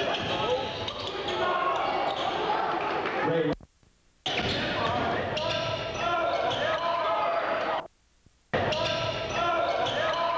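Live basketball game sound in a gymnasium: crowd voices and shouts with a basketball bouncing on the hardwood court. Twice the sound cuts out abruptly for about half a second.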